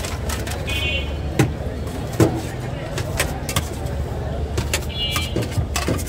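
Street traffic rumbling steadily, with scattered sharp clicks and two brief high-pitched tones, one about a second in and one near the end.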